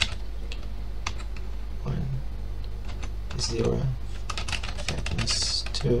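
Typing on a computer keyboard: a run of quick, irregular key clicks, with a steady low hum beneath.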